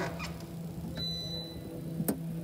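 A steady low hum with a couple of faint clicks near the start, as the pianist settles at the grand piano; no notes are played yet.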